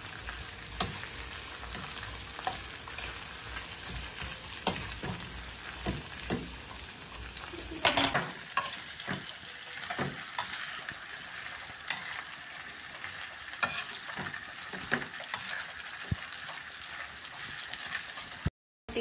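Shrimp frying in butter, cream and garlic in a metal wok, sizzling steadily as a metal spatula stirs them, with scattered clicks and scrapes of the spatula against the pan. About eight seconds in, the sizzle turns brighter and hissier.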